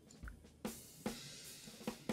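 A drum kit recording played back quietly, with kick and snare hits and a cymbal wash. It grows louder as a gain plugin is turned up.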